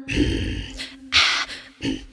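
A woman's voice performing forceful rhythmic breathing as part of the song: three loud breaths, the first long. A low held drone fades out partway through.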